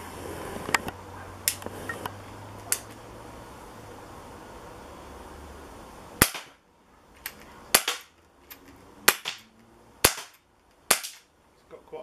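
Umarex Beretta 92 .177 CO2 BB pistol firing five sharp shots, about a second apart, starting about six seconds in, with fainter clicks between them. Light handling clicks come before the first shot.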